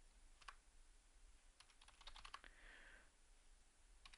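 Faint typing on a computer keyboard: a few scattered keystrokes, with a short run of them around the middle.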